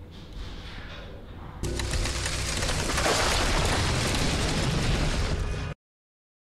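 Closing logo sound effect: a loud rush of noise with a deep rumble that starts suddenly about a second and a half in, swells, and cuts off abruptly near the end.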